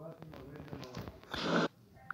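Indistinct talking, with a short loud rush of noise about one and a half seconds in.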